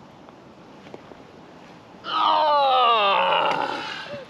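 A person's loud, drawn-out vocal cry, wavering and falling in pitch, lasting about two seconds from about halfway through; before it only quiet outdoor background.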